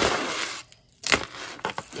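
A beaded necklace of wooden discs and seed beads rustling and clicking as it is pulled free of a tangle of jewelry: a short rustle, then a sharp click about a second in and a few lighter clicks.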